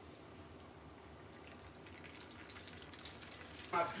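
Cornmeal-breaded catfish pinwheels deep-frying in a pot of hot oil: a steady, fairly quiet bubbling sizzle with fine crackles, which get busier after about a second and a half.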